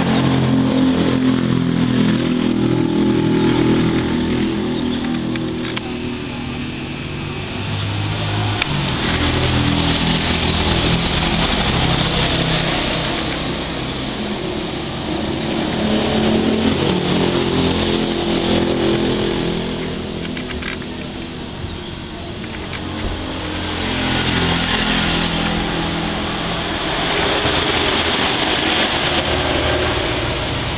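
Engines of several passing motor vehicles, each swelling and then fading in turn, with shifting pitch as they speed up.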